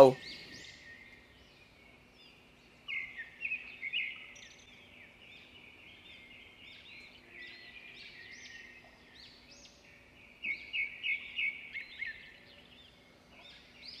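Birds chirping in a rural ambience: bursts of quick, repeated high chirps about three seconds in and again from about ten to twelve seconds in, with scattered chirps between them. A faint steady low hum lies underneath.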